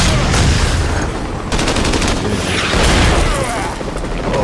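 Action-film battle soundtrack: gunfire and explosions.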